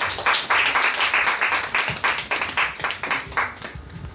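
Applause from a small audience: a dense patter of hand-claps that thins out and fades near the end.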